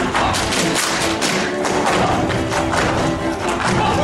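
Live Hungarian folk dance music with steady held chords, under many quick, sharp stamps and slaps from the dancers' boots.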